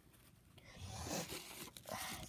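Paper packaging rustling and crinkling as it is handled, starting about half a second in and growing louder.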